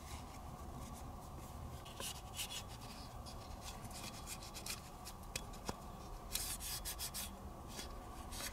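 A cleaning patch rubbing over the oiled metal parts of a field-stripped CZ 75 pistol, wiping off excess lubricant in faint, scattered strokes that come more often near the end. One light click of a metal part a little past the middle.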